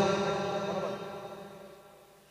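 The ringing tail of a man's chanted voice through a public-address system with heavy echo, holding its pitch and fading away to near silence in under two seconds.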